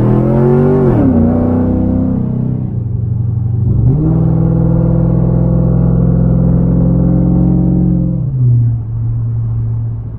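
2002 Camaro SS's LS1 V8 heard from inside the cabin, pulling under part-throttle load. Its pitch rises, then drops sharply about a second in. After a steady stretch it jumps up just before four seconds in and holds a higher note, then falls back to a lower steady note about eight seconds in.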